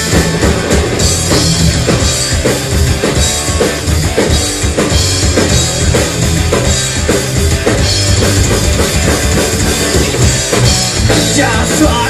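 A live rock band playing an instrumental passage: a drum kit keeps a steady, driving beat under electric bass and distorted electric guitars. A singing voice comes in at the very end.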